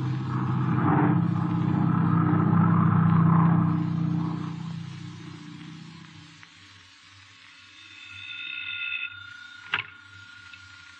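A radio-drama orchestral music bridge swells and then fades away over the first six seconds. Near the end, a telephone rings briefly, followed by a sharp click as it is picked up.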